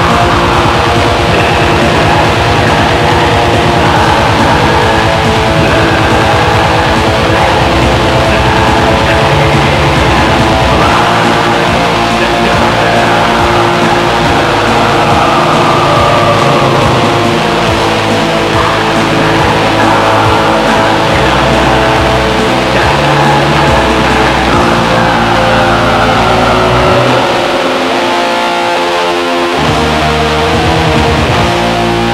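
Black metal: loud, distorted electric guitars playing dense sustained chords over a steady rhythm section. Near the end the bass end drops away for a couple of seconds before the full band returns.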